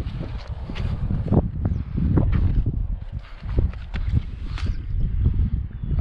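Wind buffeting the microphone, with scattered sharp knocks and splashes while a landing net is picked up and dipped into the water to land a small hooked carp.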